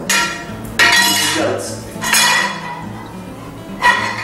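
Stainless-steel bell cover being set around the lower punches of a tablet press: metal knocking on metal in four clanks, each ringing briefly.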